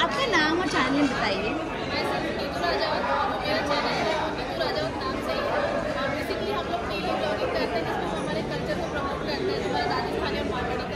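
Speech: a woman talking, with the chatter of other people's voices around her in a large hall.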